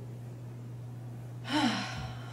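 A woman's loud, voiced gasping sigh of exertion about three-quarters of the way in, as she finishes her last crunch and lies back. Before it there is only a steady low hum.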